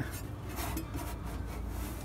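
A low steady hum, with faint rubbing and handling noises over it.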